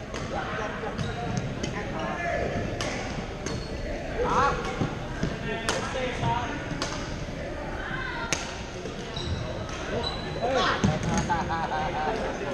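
Badminton rally in a large gym hall: a string of sharp racket hits on the shuttlecock, several short sneaker squeaks on the court floor, and background chatter from players around the hall.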